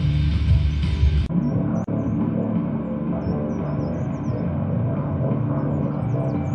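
Guitar music that cuts abruptly about a second in to a thinner, duller recording of guitar playing, with birds chirping high above it.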